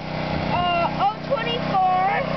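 A small engine running steadily in the background, under a boy's voice.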